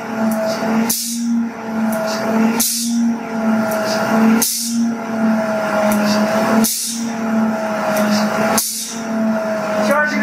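Tesla turbine driving a generator under heavy electrical load at about 14,000 RPM: a steady hum and a higher whine over a rushing hiss. About every two seconds a short sharp hiss breaks in and the whine's pitch sags and recovers, five times in a row.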